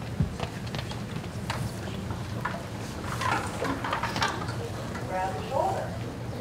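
Quiet murmur of children's voices with scattered knocks and clicks as young violinists lift their violins and bows into playing position, with one sharp knock about a quarter-second in; no playing yet.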